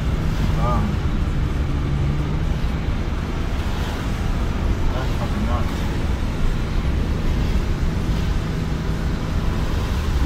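Steady low road and engine rumble heard inside a moving car's cabin, with tyre hiss from the wet road, and a faint voice now and then.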